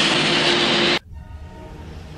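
A loud, steady rush of hissing, like air or gas venting, that cuts off abruptly about a second in; a low rumble follows.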